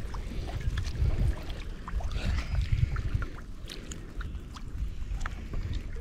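Choppy lake water lapping and splashing right at the microphone, with many small irregular splashes over a steady low wind rumble on the microphone.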